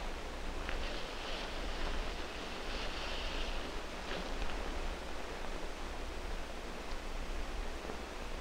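Potting soil poured from a plastic bag into a flower pot: a faint rustling trickle that comes and goes, over the steady hiss and low hum of an old 16 mm film soundtrack.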